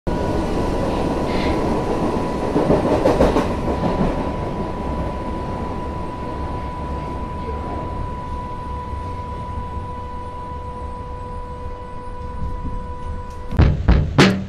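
Berlin U-Bahn train running through an underground station: a heavy rumble with a few clacks of wheels over rail joints about three seconds in, then slowly fading as the train moves on, with a steady whine underneath. Drum hits of music begin just before the end.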